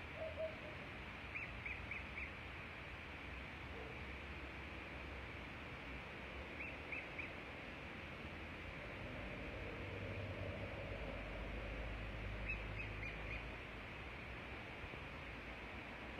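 Adult southern lapwings (quero-quero) calling in three short runs of quick, high notes, calling to their chick, which has fallen into a storm drain. Under the calls is a steady low background, and a vehicle's rumble rises and fades in the second half.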